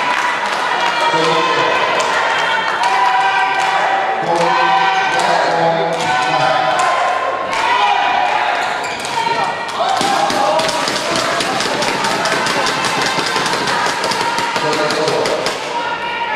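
Badminton rally: rackets hitting the shuttlecock and players' shoes striking the court in a reverberant hall, with clicks coming thick and fast in the second half, under people talking.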